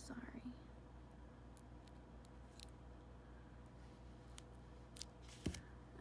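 Faint, scattered snips and clicks of small scissors trimming copper foil tape around a small cardboard disc, with a sharper click about five and a half seconds in, over a low steady hum.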